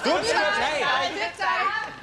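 Several people's voices talking and calling out over one another at once, unclear as words.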